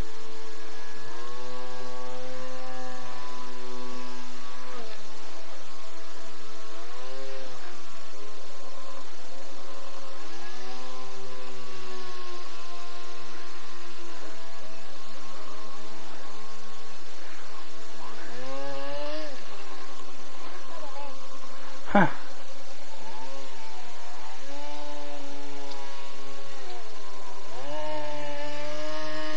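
Small engine and propeller of a radio-controlled Cajun Gator airboat running on the water, its pitch rising and falling again and again as the throttle is worked. One sharp knock late on.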